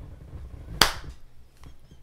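A single short, sharp smack a little under a second in, over a faint low rumble.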